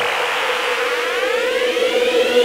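Electronic synth riser: a steady held tone with higher sweeping tones gliding upward over it, building up.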